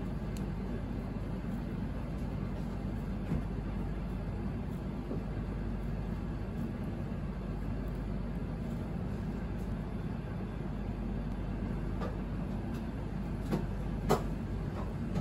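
A steady low background hum, like running machinery, with a few soft taps near the end.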